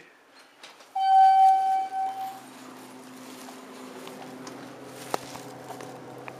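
A loud electronic beep from the elevator sounds steadily for about a second and a half, then the traction service elevator runs with a steady low hum, broken by one sharp click about five seconds in.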